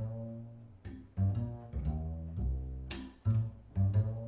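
Upright double bass played pizzicato: a jazz run of plucked low notes, each starting sharply and ringing down, about two a second.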